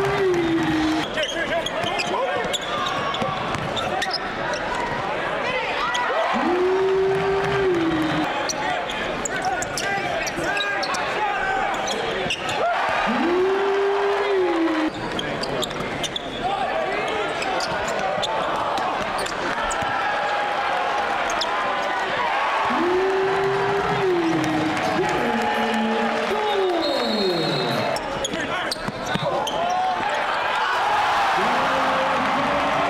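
Basketball game sound: a ball dribbling on a hardwood court with short clicks and knocks, over the steady chatter of an arena crowd. A rising-then-falling tone recurs every six or seven seconds.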